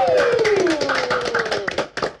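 A small group of people clapping, with long cheering shouts over it that slide down in pitch and die away near the end, while the clapping thins out.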